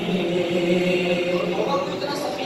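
A man reciting a naat, an unaccompanied devotional song in praise of the Prophet Muhammad, sung into a microphone in long drawn-out notes.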